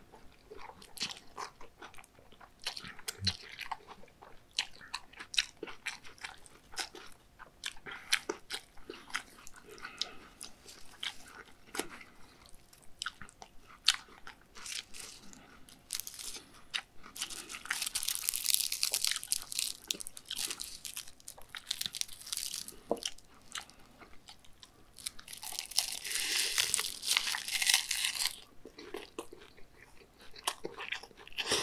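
Close-miked eating of spicy cold noodles with raw beef, crisp pear strips and dried seaweed: wet chewing full of small crunching clicks. Two longer, louder spells of noisy chewing come in the second half.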